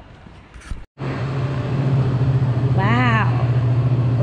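After an abrupt cut about a second in, a loud, steady low hum fills the indoor space, with one short rising-and-falling voice sound about three seconds in.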